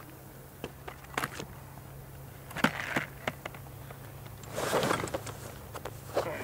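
Carp fishing bags and tackle being handled on a loaded bedchair: scattered clicks and knocks, then a louder rustle of bag fabric about five seconds in.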